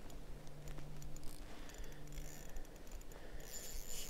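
Faint light clicks and ticks of a spinning fishing reel being handled, over a faint low hum that comes and goes in the first half.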